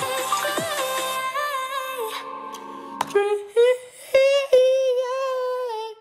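Electronic pop music plays and drops away about halfway through; then a man sings along in a long, wavering held note, sung badly by his own account ('so bad', 'terrible').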